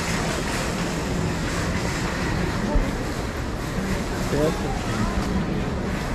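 Ambience of a busy pedestrian shopping street: a steady wash of passers-by talking, with low wind rumble on the microphone and a few nearer voices in the second half.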